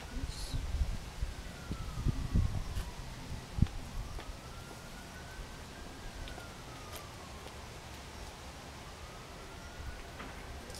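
A distant wailing siren, its faint tone slowly rising and falling every few seconds. Low thumps and knocks in the first few seconds, the loudest near the four-second mark.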